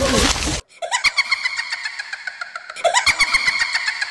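A loud noisy burst cuts off abruptly about half a second in. It gives way to a high-pitched, rapidly pulsing, laugh-like sound effect in two phrases, one about a second in and one near three seconds.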